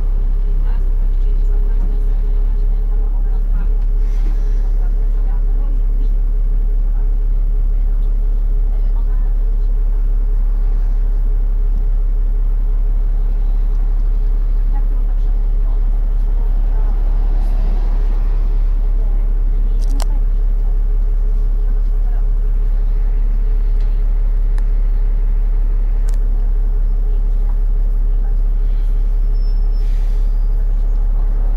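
Inside a moving single-deck bus: steady engine and drivetrain drone with a deep rumble, a constant hum and road noise. There is a single sharp click about two-thirds of the way through.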